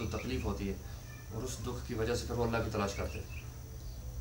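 Speech only: a voice talking in short phrases with pauses, over a steady low hum.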